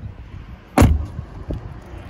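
A car door on an Aston Martin DB11 Volante being shut once: a single short thud a little under a second in.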